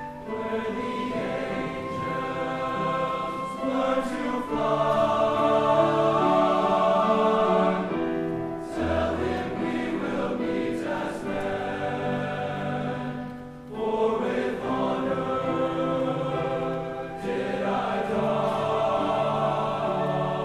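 Men's choir singing in parts, in long held phrases with short breaks between them, swelling loudest about five seconds in.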